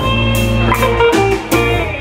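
Live rock band playing: electric guitar over electric bass and a drum kit, with sharp cymbal hits. The bass's held low notes stop near the end.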